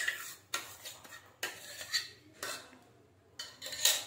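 A spoon scraping and clinking against a steel mixer-grinder jar as thick raw-mango paste is worked out of it into a plastic bowl: a few irregular clinks and scrapes.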